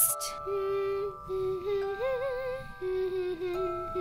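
Intro music to a children's-style song: held chords under a slow, wordless melody, one note wavering with vibrato about halfway through.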